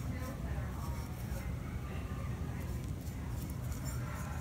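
Soft, irregular scratching of a paintbrush laying glaze on the inside of a bisque-fired clay bowl, over a steady low room hum.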